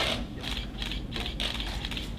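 Camera shutters clicking in quick, uneven runs, several clicks a second, as photographers shoot a fighter posing at the weigh-in scale.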